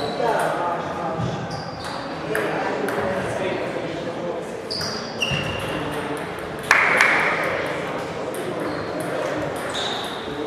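Table tennis balls clicking on tables and bats from several tables across a sports hall, over a murmur of voices; one sudden louder sound about seven seconds in.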